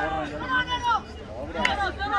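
A voice talking, with one sharp knock about one and a half seconds in.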